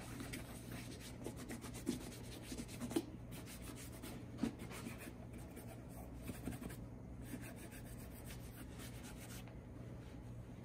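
A cotton cloth rubbing over the leather upper of a Red Wing Iron Ranger 8111 boot, wiping off leftover cream in faint, quick strokes, with a few light knocks.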